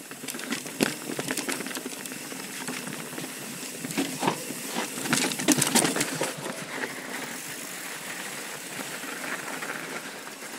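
Yeti SB4.5 mountain bike rolling over rock and snow on a rough, narrow trail: steady tyre noise with the bike rattling and clicking over bumps. The knocks come thickest and loudest about four to six seconds in.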